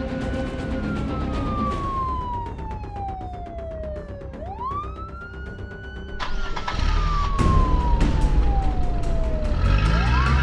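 Emergency-vehicle siren in a wail pattern: its pitch sweeps up quickly, then falls slowly over about four seconds, twice. From about six seconds in, a louder low rumble with repeated thumps joins it.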